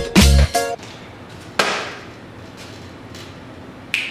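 Bass-heavy hip-hop music cuts off about half a second in; about a second later comes a single knock with a brief ring, a plastic water bottle landing upright on a paper plate. A sharp click sounds near the end.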